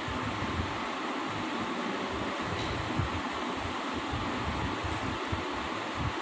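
Steady whooshing background noise like a running fan, with faint pencil strokes on paper as two letters are written into a workbook.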